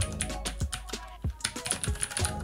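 Rapid typing on a retro round-keycap mechanical keyboard with blue switches: a quick run of sharp, clicky keystrokes.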